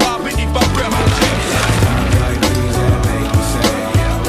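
Backing music with a steady beat.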